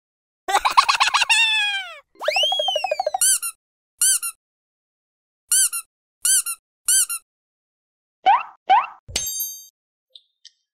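A string of cartoon sound effects with dead silence between them. First comes a long falling whistle, then a warbling rise and fall. Next is a run of short chirps in pairs, then two quick rising squeaks, and a thump with a brief ringing chime near the end.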